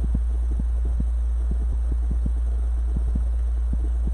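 A steady low hum, with soft, irregular light taps and rustles as hands work a wreath's painted centre piece into deco mesh.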